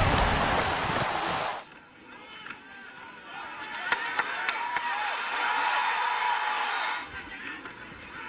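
Loud stadium crowd noise with voices, which cuts off abruptly about a second and a half in. Quieter crowd sound with voices follows, with a few sharp knocks in the middle.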